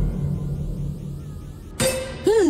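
A metallic clang, used as a dramatic shock sting, ringing out over a low rumble and slowly fading. A sharp new sound starts just before the end.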